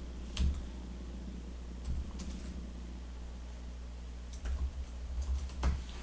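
Computer keyboard typing: a few scattered keystrokes in the first half, a pause, then a quick run of keystrokes over the last second and a half.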